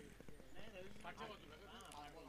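Faint, distant chatter and calls of cricket players and spectators, with a few light clicks.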